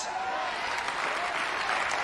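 Congregation applauding, a dense steady clapping of many hands, with a few faint voices calling out over it.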